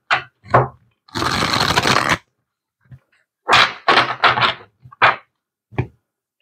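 A deck of tarot cards being shuffled by hand on a table: a string of quick slaps and taps of the cards, with a continuous riffle lasting about a second that starts about a second in.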